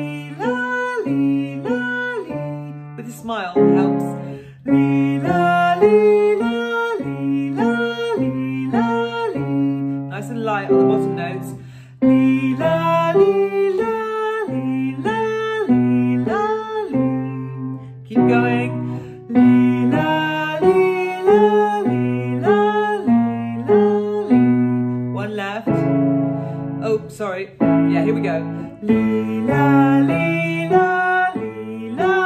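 A woman singing a vocal warm-up exercise, a continuous run of short held notes stepping up and down, over an instrumental accompaniment.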